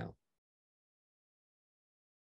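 The last syllable of a spoken word cuts off just after the start, then complete silence.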